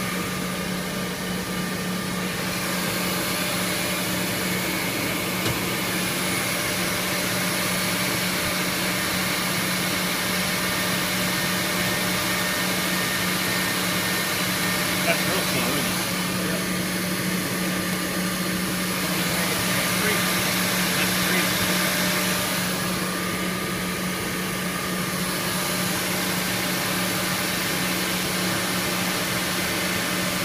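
Eldorado gun drill machine running with a steady hum and a constant low tone, and a few faint clicks.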